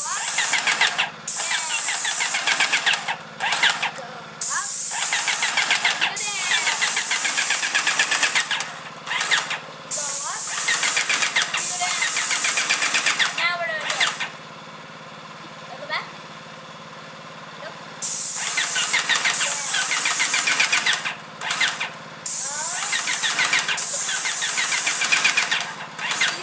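Airless paint sprayer at work: the spray gun hisses in long bursts as the trigger is pulled and released, about seven times with a pause of several seconds in the middle, over the steady hum of the sprayer's pump motor.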